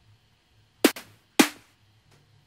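Synthesized trap snare drum from Ableton's Operator, a fixed-pitch oscillator layered with white noise, hit twice about half a second apart. Each hit is a sharp crack with a short low body that drops in pitch and dies away quickly.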